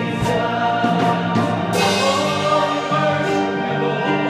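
Live gospel worship music: men's voices singing together through microphones over a Yamaha Clavinova digital piano, with a few sharp percussion hits in the first half.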